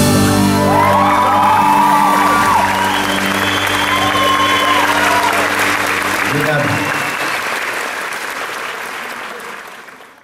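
A live band's final chord held after a closing hit, with the audience applauding and cheering over it. The chord stops about six and a half seconds in, and the applause fades away near the end.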